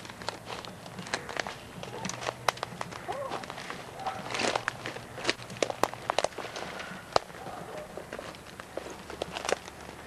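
Footsteps through dry leaves and twigs in underbrush: irregular crunching, rustling and snapping of brush underfoot.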